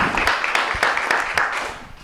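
Audience applauding, the clapping fading out near the end.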